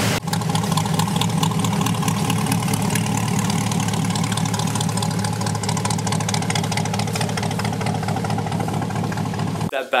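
2020 C8 Corvette's 6.2 L LT2 V8 idling steadily through a Soul Performance cat-back exhaust with sport cats, very loud. It cuts off suddenly near the end.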